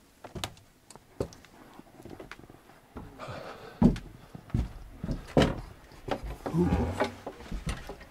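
Sharp knocks and footsteps on wooden boards and a wooden door as someone walks into a house, sparse at first and busier from about three seconds in. Indistinct voices come in near the end.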